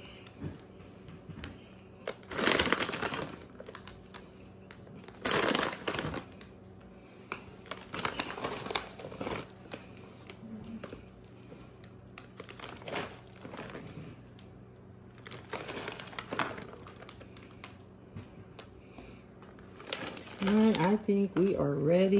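A plastic bag of chocolate melting wafers crinkling in short bursts every two to three seconds as a hand reaches in for more. A woman's voice comes in near the end.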